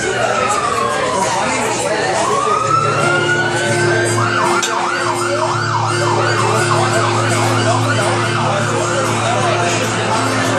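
An emergency-vehicle siren. It runs as a slow falling and rising wail, then about four seconds in switches to a fast warble of roughly two and a half cycles a second. A steady low hum sits beneath from about three seconds in, with room chatter.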